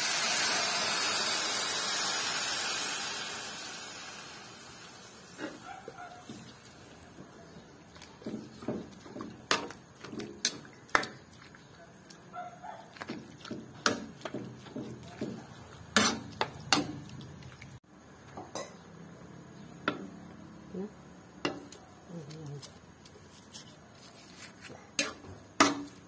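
Coconut milk poured into a hot metal wok sizzles loudly and fades away over the first few seconds. After that a metal spatula scrapes and clinks against the wok as the mixture is stirred.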